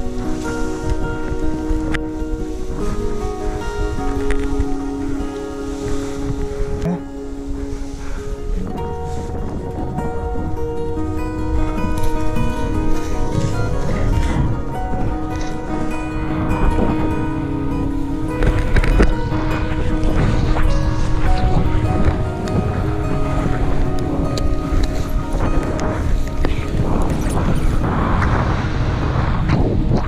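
Fingerstyle acoustic guitar music, with a low rumble of wind underneath.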